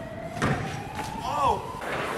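BMX bike grinding along the edge of a wooden ledge with a thin steady scrape, then a hard thud about half a second in as it lands off the end. A short shout follows about a second later.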